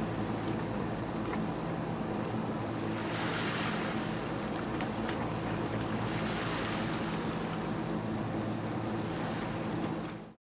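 A steady low hum made of several held tones, over a wash of wind and sea noise that swells briefly about three seconds in. A few faint high chirps sound between about one and three seconds.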